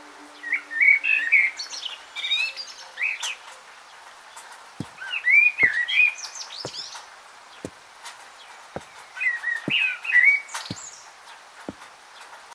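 A songbird chirping in three short bursts of quick, varied notes with pauses between. Faint clicks come about once a second in the second half.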